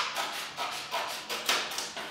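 Scissors snipping through a folded sheet of paper along its crease: a series of short crisp cuts, a few a second.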